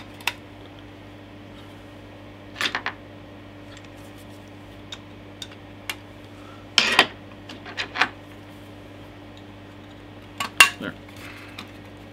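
Handling noise from a floppy drive's sheet-metal casing: scattered short metallic clicks and rattles as it is turned over in the hands and tape is pulled off its sides, the loudest clatter about seven seconds in.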